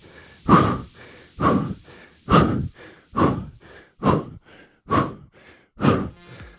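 A man breathing out hard in a steady rhythm while holding a forearm plank, seven short exhalations about one a second.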